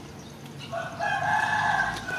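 A rooster crowing: one drawn-out crow that starts under a second in and is still going at the end.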